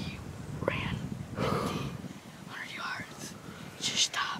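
A boy whispering a few short phrases, with pauses between them.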